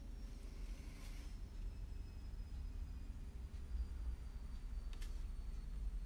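Quiet room tone with a low hum and faint handling at a craft desk. There is a soft brushy scrape about a second in and a single light click about five seconds in.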